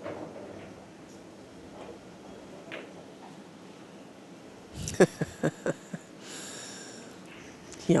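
Pool balls clacking: a run of about five sharp clicks a little after halfway, the first the loudest, as the balls collide on the table. A short hiss follows.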